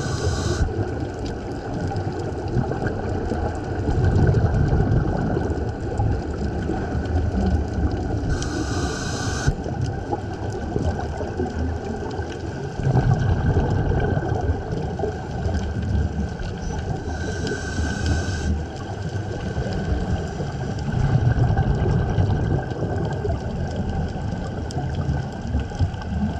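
Scuba regulator breathing heard underwater through the camera housing: short hissing inhalations at the start, about nine seconds in and about seventeen seconds in, with low rumbling gushes of exhaled bubbles every few seconds in between.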